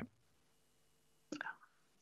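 Near silence in a pause between speakers, broken about two-thirds of the way in by a brief, soft vocal sound, like a breath or a murmur, from a person on the call.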